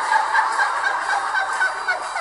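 A man laughing in a rapid, high-pitched string of short squeaky notes, about six or seven a second, that breaks off near the end.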